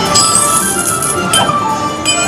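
Wild Leprechaun slot machine playing its free-games bonus music, with bright chiming and clinking effects over it as the reels spin: a ringing chime for about a second near the start, then a short sharp one.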